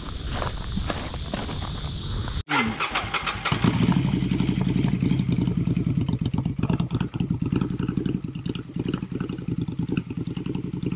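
Steady wind and rustling noise cuts off about two and a half seconds in. A motorcycle engine then starts and settles into a steady, pulsing idle.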